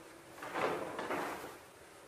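A large paper flip-chart page being turned over: a rustling swish of paper that lasts about a second.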